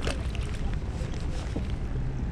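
Steady wind buffeting the microphone with a low rumble, over the hiss of rain on the water of the fishing pen, with a brief sharp sound right at the start.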